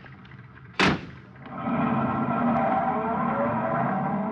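Radio-drama sound effect of a car door slamming shut about a second in. About half a second later a steady sound with several held pitches swells up and holds for about three seconds.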